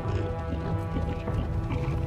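Film score with long held notes, over the irregular footfalls of several ridden beasts walking across rough ground.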